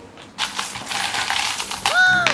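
Loose metal coins clinking and scattering onto a table, a quick run of many small clinks that starts about half a second in.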